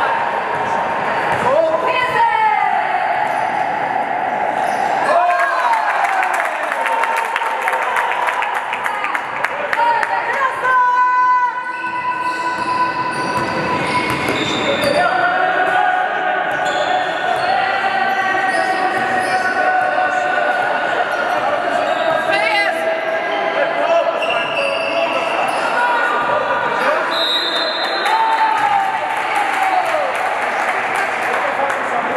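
A basketball game in a sports hall: the ball bouncing on the court and sneakers squeaking, under the shouts and chatter of players and spectators echoing in the hall.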